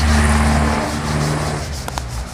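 A motor vehicle's engine running close by, a steady low drone that drops away just under a second in.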